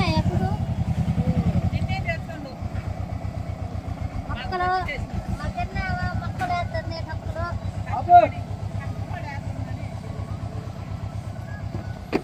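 Tractor's diesel engine idling with a steady, regular beat, louder for the first two seconds and then lower.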